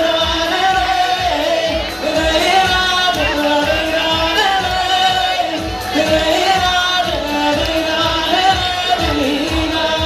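A man singing live into a microphone over a backing track with a steady beat, his voice holding long, ornamented notes that bend in pitch. The audience's voices sit faintly beneath.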